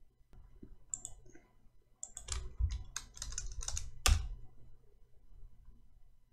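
Computer keyboard typing: a couple of isolated keystrokes about a second in, then a quick run of keystrokes about two seconds in that ends in one harder keystroke about four seconds in.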